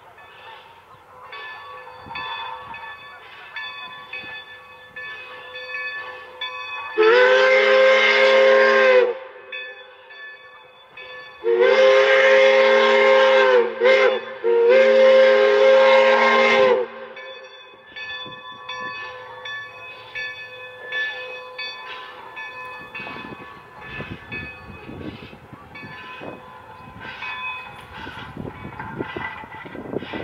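Train whistle sounding a chorded note in the long, long, short, long pattern of the grade-crossing signal, the loudest thing here. Afterwards the train's running noise beats in a steady rhythm.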